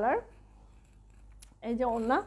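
A woman's voice trailing off at the start and resuming near the end. In the pause between, there is a faint rustle of folded cotton dress fabric being handled and one short, light click.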